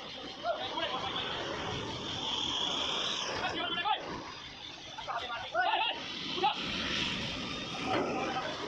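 Men's voices calling out now and then over a steady background noise of machinery and outdoor activity.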